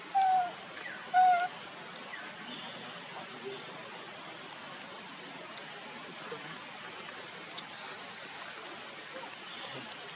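Outdoor forest ambience: a steady high-pitched insect drone, with two short, clear calls about a second apart near the start from an unseen animal.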